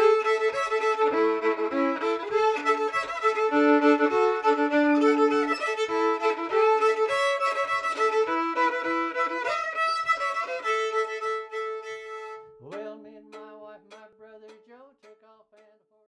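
Fiddle-led instrumental music with a steady beat. About three-quarters of the way through it thins out: a fiddle note slides up, then a few sparse notes fade away to silence.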